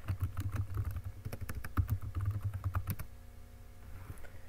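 Typing on a computer keyboard: a quick run of keystrokes for about three seconds, then it stops.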